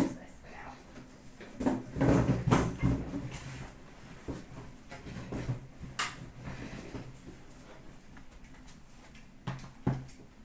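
Handling noises as sealed trading-card boxes are moved about on a glass counter: knocks and rustling, loudest about two seconds in, with sharp clicks about six seconds in and again near the end.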